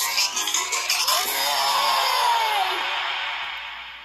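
Upbeat children's cartoon music played back through a device's speaker. It includes a long sliding note that falls in pitch, then the music fades out near the end.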